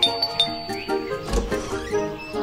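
A cartoon doorbell is pressed and rings with a single high tone at the start that lasts a little over a second, over steady background music. A short noisy sound comes partway through.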